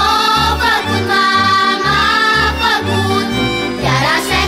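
Romanian folk song played by a band, a melody line carried over a bouncing bass that alternates between two low notes.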